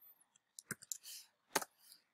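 A few quiet computer keyboard keystrokes, the loudest about one and a half seconds in, as a terminal command is entered.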